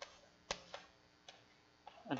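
Chalk tapping and clicking against a blackboard as words are written: a handful of faint, sharp, irregularly spaced taps, the loudest about half a second in.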